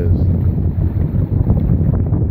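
Motorboat engine running with a steady low drone, with wind rushing over the microphone.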